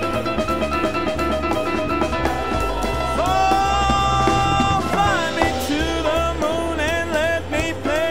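Live jazz: a Yamaha grand piano improvising over drum kit and bass, with a steady cymbal pattern. About three seconds in, a wordless voice joins, scat-style. It holds a long note, then slides between short notes with vibrato.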